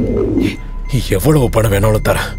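A man's voice speaking short, halting phrases over a low steady background drone.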